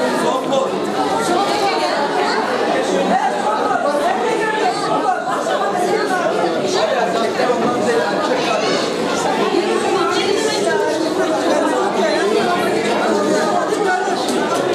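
Crowd chatter: many people talking at once in a steady babble of overlapping, indistinct voices, filling a large hall.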